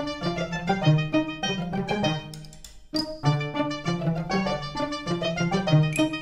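Background music: a quick, bouncy tune on strings, with short plucked and bowed notes. It drops away for a moment just before the halfway point, then starts up again.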